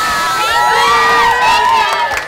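A group of schoolchildren cheering and shouting all at once, with many high voices holding long yells.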